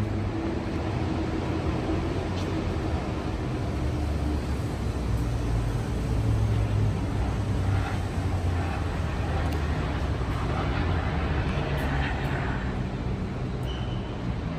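Steady low rumble of city road traffic, swelling a little as vehicles pass about halfway through and again near the end.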